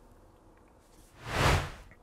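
A short whoosh sound effect that swells and fades in under a second, a little over a second in.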